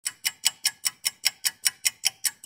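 A steady ticking sound effect of the kind used in edited intros, sharp crisp ticks at about five a second.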